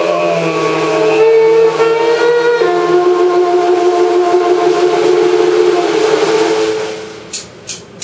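Long held notes on an alto saxophone in a small free-jazz group. The note changes to a lower pitch about two and a half seconds in and fades after about seven seconds, and a few sharp percussive hits follow near the end.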